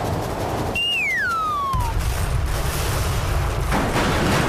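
Cartoon falling-whistle sound effect, a tone sliding steadily down over about a second, set among a rumbling crash. The crash swells again as the whistle ends, the sound of a landing impact.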